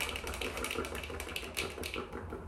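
Fast, random fingernail and finger-pad tapping: a rapid, irregular stream of light clicks.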